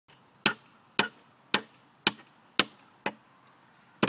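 Hammer blows on wooden deck boards: six separate strikes at a steady pace of about two a second, the last a little softer.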